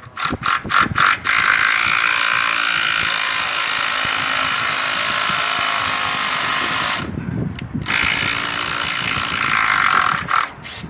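Cordless drill with an 8 mm bit boring through a timber post into a brick wall to take an anchor bolt. A few short starts, then about six seconds of steady drilling, a brief pause with a couple of quick bursts, and steady drilling again near the end.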